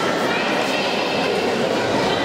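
Steady crowd noise in a large indoor sports hall: many spectators talking and calling out at once, with no single voice standing out.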